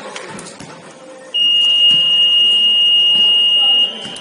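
Gym scoreboard buzzer sounding one long, steady, high-pitched tone, starting about a second in and lasting about two and a half seconds before cutting off.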